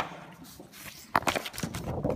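Paper exam booklet pages being turned and handled: a rustle as the page starts over, then a cluster of crinkling rustles from about a second in.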